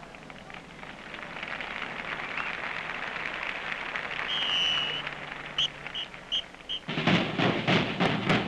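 Crowd applauding after the band's number ends. Through it comes a drum major's whistle, one long blast and then four short ones, the cue for the drum line, whose drums start playing near the end.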